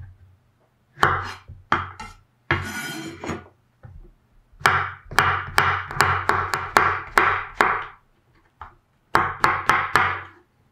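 Chef's knife slicing button mushrooms on a wooden cutting board. Each cut ends in a sharp knock of the blade on the board. There are a few separate cuts early on, then a fast run of about eight cuts at roughly three a second, and another short run near the end.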